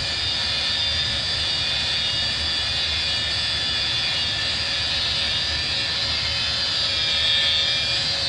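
Corded DeWalt rotary polisher running steadily with an 8-inch Turbobuff foam compound pad, buffing compound: a steady high motor whine, swelling slightly near the end.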